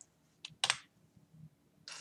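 A few computer keyboard keystrokes, separate short clicks, the strongest about two-thirds of a second in and another near the end.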